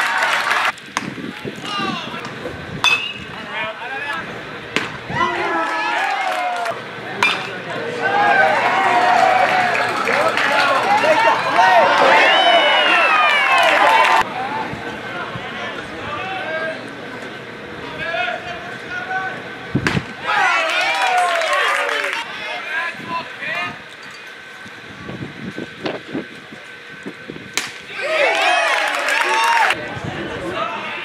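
Indistinct shouting and chatter from players and spectators, several voices overlapping, loudest in a stretch from about 8 to 14 seconds, with a few sharp knocks.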